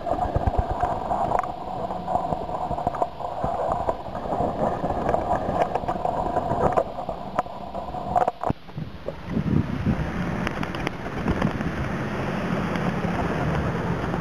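Feral pigeons flapping their wings close by as they take off and land, heard as short sharp flutters over a steady hum of traffic and wind on the microphone. The hum fades about eight seconds in, leaving rougher rustling noise.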